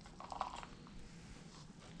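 A few faint light clicks and a short soft rustle, about half a second in, of a small plastic scoop cup working potting soil in a clear plastic terrarium tub as soil is scooped out.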